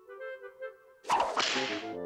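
A cartoon swish sound effect, a loud whip-like whoosh about a second in that lasts most of a second, over a few held music notes.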